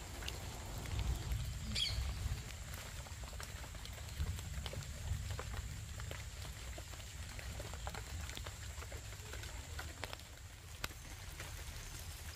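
Faint rustling of vine leaves and small scattered snaps as leaves are handled and picked by hand, over a low steady rumble.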